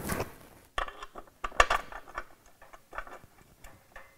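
Light metallic clicks and clinks of bolts being handled and started by hand into a bellhousing on an LS engine block, with one sharper clink about one and a half seconds in.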